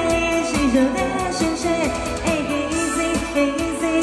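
A woman singing a pop song into a microphone over amplified backing music, her voice sliding between notes over a steady beat.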